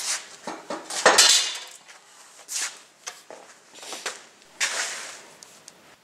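Small metal objects being handled and shifted about: an irregular run of clinks, knocks and scrapes, the loudest about a second in.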